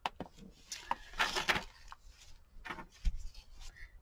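Paper rustling and crackling as the stiff, layered pages of a thick handmade junk journal are turned and the book is opened flat, with a thump about three seconds in.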